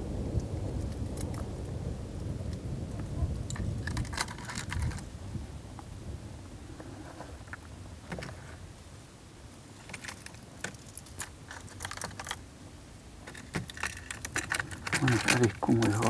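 Small clicks and rattles of fishing tackle being handled: plastic lure boxes and the metal hooks and soft baits inside them knocking together, in bunches about four seconds in and again from about ten seconds on, over a low steady rumble that fades through the first half.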